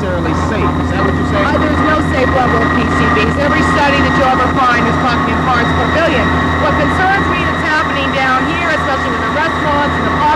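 A woman talking over a loud, steady machine drone made of several constant hum tones that never lets up.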